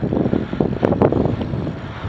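Wind buffeting the microphone of a camera riding on a moving bicycle: a loud, fluttering rush with a few brief clicks about a second in.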